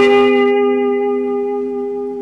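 Electric guitar: two notes on the 4th and 2nd strings at the eighth fret, played together once and left to ring, slowly fading.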